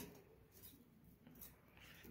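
Near silence: room tone, with two faint brief sounds about two-thirds of a second and a second and a half in.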